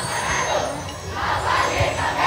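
A group of dancers chanting together in rhythmic shouts, about two a second, over crowd noise, with low drum thuds underneath.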